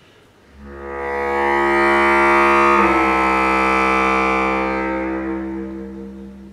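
Solo bass clarinet holding one long note: it swells in after a brief pause, shifts slightly in pitch about three seconds in, and fades away near the end.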